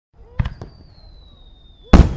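Fireworks: two sharp pops, then a thin whistle that slowly falls in pitch for over a second, cut off near the end by a loud bang.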